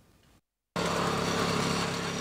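A small engine running steadily, cutting in suddenly less than a second in.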